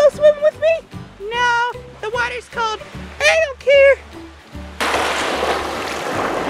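Background music with a high bending melody over a bass line. About five seconds in, it gives way abruptly to the steady wash of small waves lapping onto a pebbly beach.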